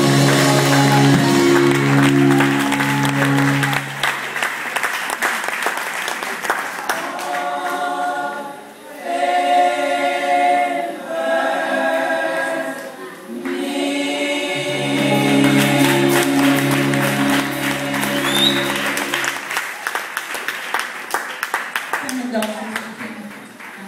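Gospel choir singing sustained chords over instrumental backing with low bass notes, with hand-clapping throughout.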